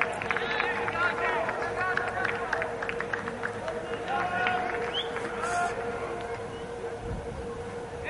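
Scattered distant shouts and chatter from a few people in a sparsely filled football stadium, over a steady faint tone.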